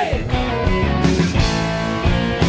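Rock band playing an upbeat instrumental groove: electric guitars, electric bass and a Pearl drum kit with a steady beat.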